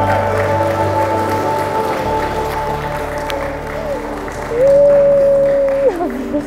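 Wedding guests applauding over background music, with a loud long held note near the end.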